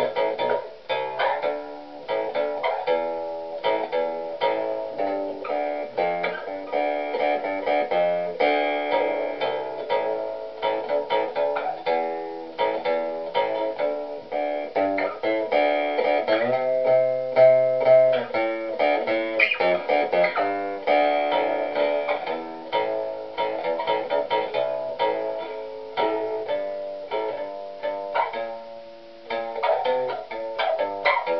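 Two-string cigar box bass guitar with a 34-inch scale being plucked in a steady run of notes, an informal try-out bass line. One note is held longer a little past halfway.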